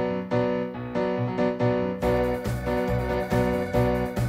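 Background music: a piano plays a steady run of notes, about three a second, with a deeper bass joining about halfway through.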